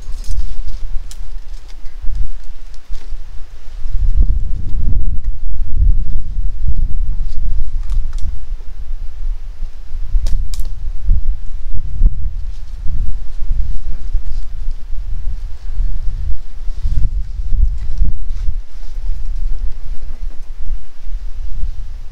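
Wind buffeting the microphone in gusts, a heavy low rumble that rises and falls, with a few faint clicks scattered through it.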